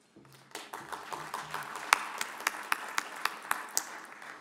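Audience applauding. The applause builds about half a second in, a few sharp claps stand out at about three to four a second, and it tails off near the end.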